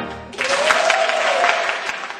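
Pipe organ chord dying away at the start, then audience applauding, with one long rising-and-falling tone over the clapping.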